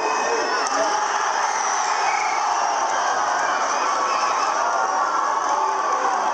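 Crowd of spectators shouting and cheering, many voices overlapping without a break.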